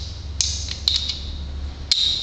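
A TiGr Lock cylinder being slid on and off the squeezed ends of a titanium lock bow: three sharp metal clicks spread across the two seconds, with brief metal-on-metal scraping around them as the notched bow ends work in the cylinder's groove.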